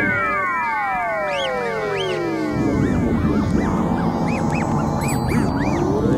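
Electronic instrumental music: synth tones slide down in pitch with many echoing copies. About two and a half seconds in a low bass comes in, with short bouncing synth blips above it, and near the end a new tone sweeps upward.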